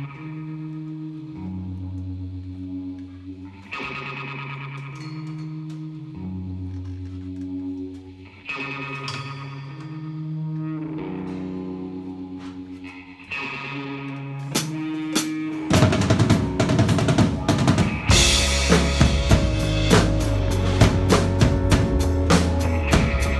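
A recorded song plays with sustained pitched chords and bass notes changing every couple of seconds; about 15 seconds in an acoustic drum kit (Yamaha Stage Custom Advantage) comes in, with crashing cymbals from about 18 seconds. The kit is picked up only by the room microphone, with no drum mics.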